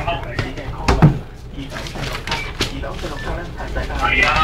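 Inside a minibus cabin, the engine runs with a steady low rumble. A single loud knock comes about a second in, with snatches of voices around it.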